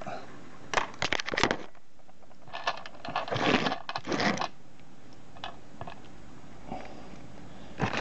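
Clear plastic bowl of small metal circuit-breaker parts handled on a kitchen scale: a few sharp clicks about a second in, then a couple of seconds of rattling and scraping as the bowl is lifted and the parts shift in it.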